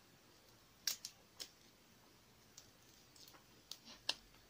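Cooked shrimp shell being peeled off by hand, giving a few small, sharp crackles: a close cluster about a second in and a few more near the end.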